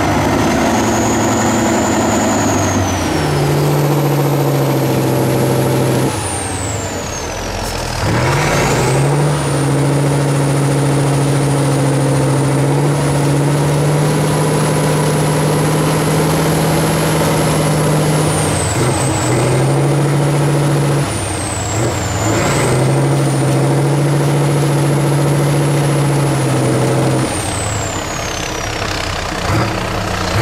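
A 6x6 off-road trial truck's diesel engine held at high revs under heavy load as the truck crawls through deep mud ruts, with a high whistle that rises and falls with the throttle. The revs drop off briefly several times, about a fifth of the way in, around two-thirds of the way and near the end, then come back up.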